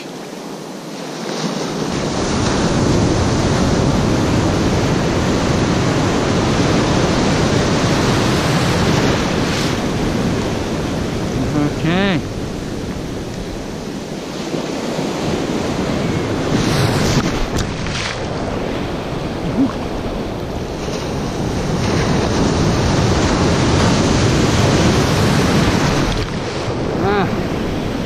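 Shallow surf washing and foaming around the wader, mixed with wind buffeting the microphone; the wash swells and eases in long surges.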